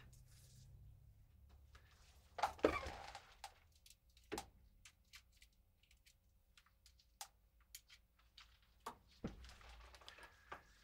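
Quiet room tone with scattered faint clicks and a few soft knocks, the loudest a brief rustling noise about two and a half seconds in.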